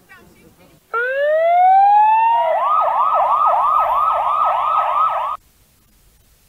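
Electronic siren: a rising wail about a second in, then a rapid up-and-down yelp about three cycles a second, cut off abruptly.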